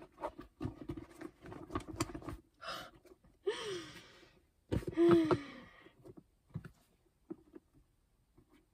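Stiff cognac leather of a small crossbody bag being squeezed and flexed by hand to soften it, with rapid small creaks and crackles for the first couple of seconds. Then come two short breathy vocal sounds from the woman handling it, the second and louder about five seconds in.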